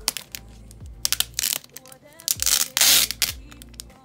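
Thin foam packing sheet crackling and rustling as it is peeled and handled, with a loud burst of crinkling about two and a half seconds in. Background music with a steady beat plays underneath.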